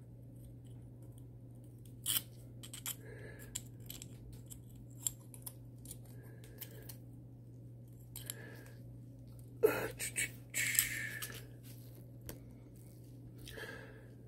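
Small handling noises as a circuit board is slid back into a small aluminium case: scattered light clicks and scrapes of metal, with a busier run of clicks about ten seconds in. A steady low hum runs underneath.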